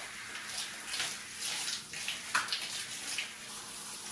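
Shower head spraying water over long hair and onto a tiled floor: a steady hiss with uneven splashing as the flow is moved about, and one sharper splash a little past halfway.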